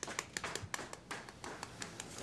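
Fingers cracking and picking the shell off a boiled egg: a quick, irregular series of small crisp clicks and taps, thinning out in the second half.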